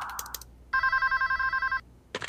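A hiss fades out at the start, then a telephone rings once: an electronic ring trilling rapidly between two pitches for about a second.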